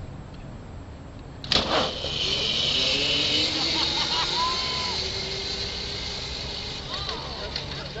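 Racing creepers launching off the start line: a sudden crack about one and a half seconds in, then a loud steady hiss with a slowly rising motor whine as they speed away. Crowd voices and shouts are heard over it.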